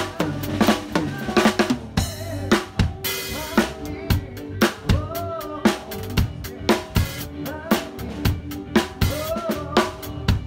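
Drum kit played in a steady groove, with bass drum, snare and cymbal strokes one after another. Under the drums runs a backing song whose pitched notes can be heard between the hits.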